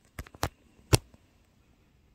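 A few sharp clicks and taps from handling something right at the microphone, three in the first second with the loudest about a second in, then quiet room tone.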